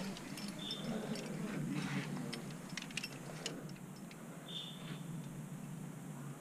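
Quickdraws and carabiners on a sport climber's harness clinking lightly and irregularly as he climbs, with a cluster of sharper clicks about three seconds in.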